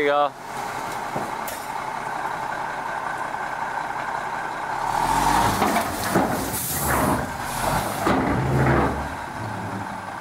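Dump truck's diesel engine running while its raised bed tips a load of dirt out of the tailgate. The engine gets louder and deeper about halfway through.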